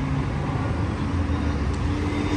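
Road traffic on the adjacent street, a steady low rumble of passing cars.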